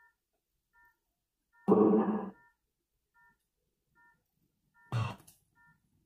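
Necrophonic ghost-box app playing through a phone speaker. Faint beeping tones repeat under a second apart, with a short, chopped voice-like burst about two seconds in and a briefer one near the end.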